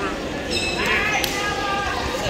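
Spectators' voices shouting in a large, echoing gym, with a sharp knock about a second in.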